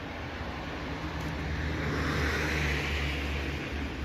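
A motor vehicle passing: a low engine hum with a rushing noise that builds to its loudest a little past halfway, then fades.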